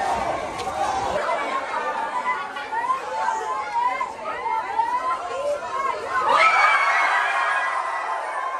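A large crowd of children and adults talking and calling out all at once, many voices overlapping. About six seconds in the voices swell louder together, then ease off near the end.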